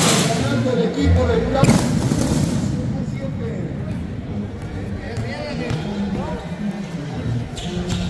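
Fireworks rockets going up with a loud hiss, once at the start and again about two seconds in, over the steady chatter of a crowd of spectators.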